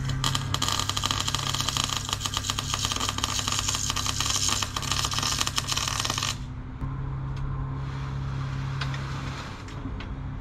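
Electric arc welding: a continuous crackling arc for about six seconds that cuts off suddenly, over a steady low hum.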